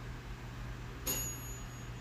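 A single high ding from a kitchen appliance's timer about a second in, ringing out over most of a second: the signal that the pizza is done. A steady low hum runs underneath.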